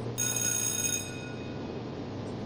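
A short electronic tone, several steady high pitches sounding together, that starts just after the beginning and dies away about a second in, over a steady low hum.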